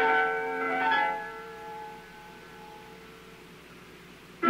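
A piano chord rings and fades away over about two seconds. Then comes a pause of about two seconds with only the faint surface hiss of the vinyl recording.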